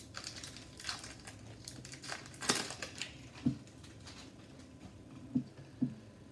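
Foil wrapper of an Upper Deck hockey card pack being torn open and crinkled, then the cards being slid out and handled.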